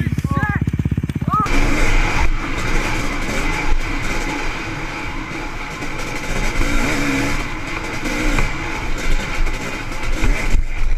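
Dirt bike engine running, with a few short shouts over it. About a second and a half in it changes to a dirt bike being ridden, heard through a helmet camera: engine with a steady high whine under heavy wind rush.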